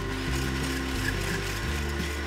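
Electric hand blender with a whisk attachment running steadily as it beats egg yolks in a glass bowl, under background music.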